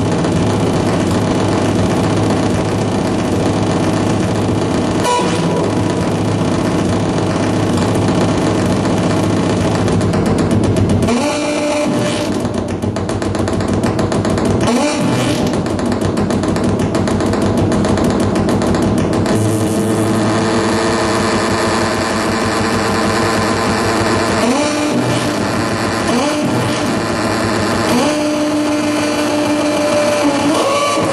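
Loud electronic noise from circuit-bent hardware played live: a dense buzzing drone, with several sharp upward pitch glides that settle into held tones in the second half.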